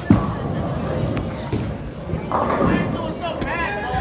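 Bowling alley din: a single sharp thud just after the start, a couple of fainter knocks, and background voices.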